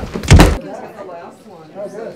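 A loud thump with a heavy low end, cut off abruptly about half a second in, followed by faint talking.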